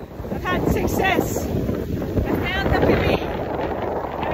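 Wind buffeting the phone's microphone in a steady low rumble, with snatches of a woman's voice breaking through.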